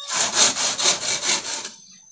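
Hand saw cutting through a bamboo pole, quick back-and-forth strokes about four a second, stopping shortly before the end.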